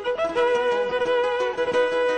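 Solo violin played with a bow: a few quick notes, then a long held note.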